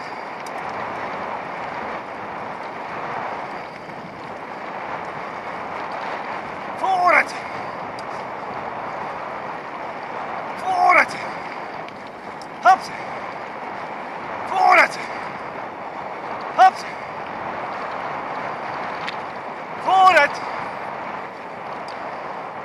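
Bicycle rolling fast along a dirt track, with steady wind and tyre noise throughout. A man's short shouted calls to the pulling dog come six times, every two to four seconds.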